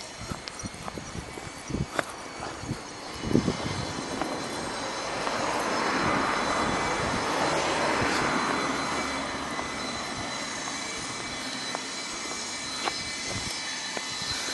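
A vehicle passing by: its noise swells for a few seconds, peaks about halfway through, then fades into a steady traffic hum. A few short knocks come in the first few seconds.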